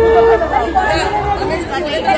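A conch shell (shankha) blown in one long steady note that cuts off about a third of a second in, over a group of people chattering.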